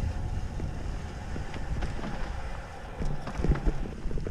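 Hardtail mountain bike rolling down a dirt forest trail, with the irregular knocks and rattles of the bike over roots and bumps, busiest about three seconds in, under wind rumbling on the microphone.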